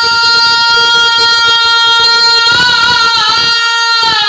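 A man singing a naat (Urdu devotional poem) unaccompanied into a microphone, holding one long high note for about two and a half seconds before his voice wavers and bends.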